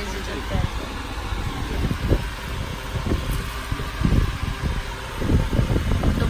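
Cloth rustling and irregular bumps of handling close to the microphone as fabric is unfolded and moved, with low voices in the background.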